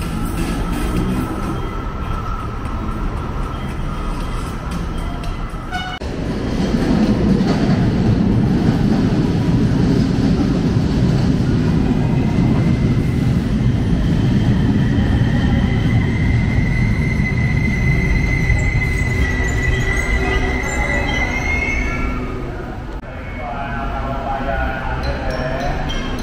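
Manila LRT Line 1 light-rail train running past the station platform: from about six seconds in, a loud rumble of steel wheels on rail, joined by a high whine that rises slightly before the sound falls away near the end. Background music plays underneath, and it is the main sound before the train comes in.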